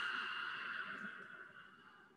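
A man's long, deep inhale through the nose: a steady airy hiss that fades out near the end as his lungs fill for a held breath.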